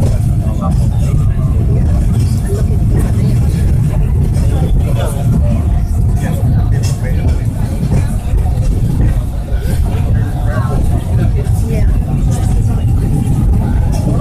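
Steady low rumble of a moving Peak Tram funicular car, heard from inside among the passengers, with faint voices beneath it.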